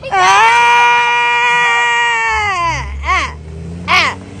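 A long, high celebratory shout held at one pitch for about two and a half seconds, then two short whoops. From a little past halfway, the low steady rumble of the school bus's engine comes in underneath as the bus pulls away.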